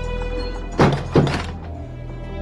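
Two heavy wooden thuds, less than half a second apart, about a second in, as a pair of wooden doors is pushed open. Steady background music plays underneath.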